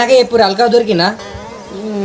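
A man's voice, loud and pitched, with the pitch wavering through a drawn-out stretch after about a second.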